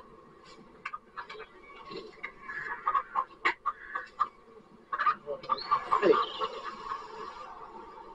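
Men laughing in repeated short bursts.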